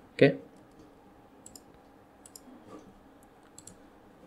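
A few faint computer mouse clicks, short and scattered.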